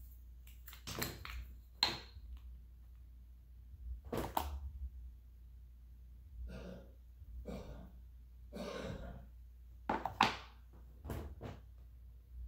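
Handling sounds from small makeup packaging: scattered short rustles and light knocks, the sharpest about two seconds in and about ten seconds in, over a steady low hum.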